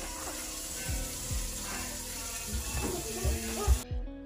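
Kitchen tap running into the sink as a steady hiss, with a few soft low knocks. The water cuts off abruptly near the end.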